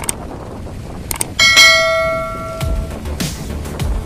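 Subscribe-button notification sound effect: a couple of quick clicks, then a bright bell ding that rings out and fades over about a second and a half.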